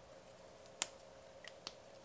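Quiet room tone with a faint steady hum, broken by a few small sharp clicks: one louder click a little under a second in, then two fainter ones about a second and a half in.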